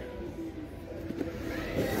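Quiet store background: a low steady hum with faint music playing.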